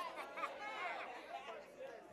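Several congregation members calling back and talking at once, a low overlapping chatter of voices responding in the sermon's pause.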